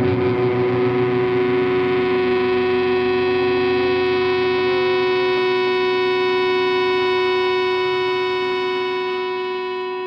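A single distorted electric guitar chord held and ringing out after the drums stop, at the end of a death metal song. It fades slowly over the last few seconds.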